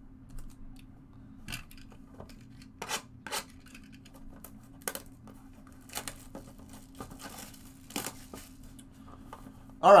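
Plastic wrap being torn and peeled off a cardboard trading-card box: scattered short crinkles and rips, over a steady low hum.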